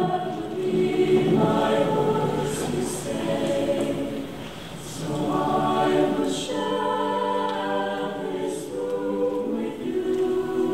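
Mixed high school choir singing in harmony, the sound thinning out about four and a half seconds in and then swelling again.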